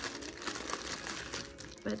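Clear plastic packaging crinkling as it is handled, a quick run of small crackles.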